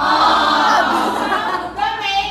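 A group of students singing together, many voices at once, breaking off shortly before the end.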